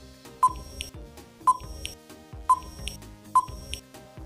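Quiz countdown timer sound effect: a short electronic beep about once a second, four in all, each followed by a tick, over soft background music.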